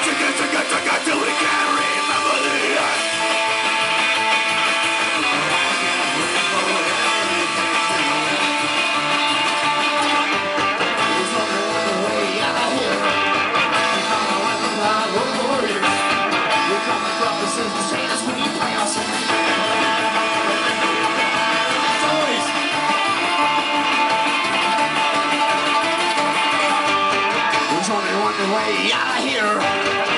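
Live amplified band playing an instrumental passage with no singing: electric guitar, banjo, mandolin and accordion over upright bass and drums, running steadily throughout.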